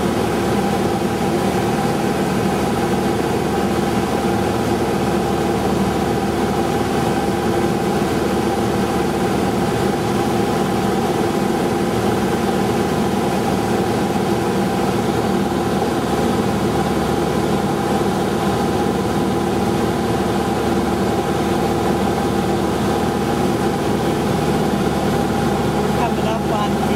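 Steady drone of an aircraft's engine heard from inside the cabin, several fixed tones over a constant rushing noise.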